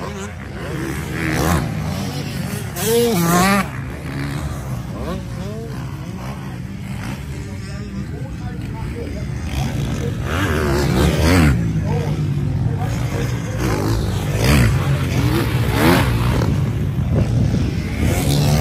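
Motocross bikes revving up and falling off repeatedly as they race the track and take a jump, with several engines overlapping and louder in the second half.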